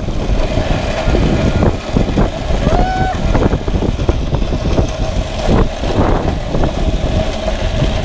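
Pulley wheels running along the steel cable of a small hanging cable-car cage, a steady rumbling whir with a thin whine and rattling of the metal frame. A brief shout about three seconds in.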